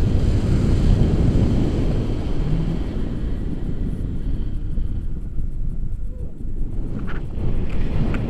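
Airflow buffeting the microphone of a handheld camera during a tandem paraglider flight: a loud, rough, low rumble that eases briefly a little past halfway.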